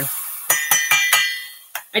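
A metal spoon clinking several times in quick succession against a glass jar of minced garlic, each clink ringing briefly as the garlic is scooped out.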